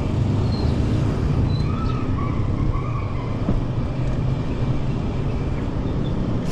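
Steady low rumble of wind buffeting the microphone and tyre noise from a bicycle riding along a paved road, with a faint wavering tone about two seconds in.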